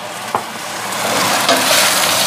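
Sliced mushrooms and peppers sizzling in a hot stainless-steel wok, with one short click near the start. The sizzle grows louder from about halfway through.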